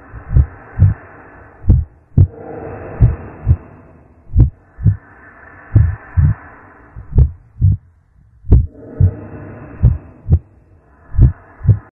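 A slow heartbeat sound, paired low thumps (lub-dub) about every second and a half, over a hiss that swells and fades.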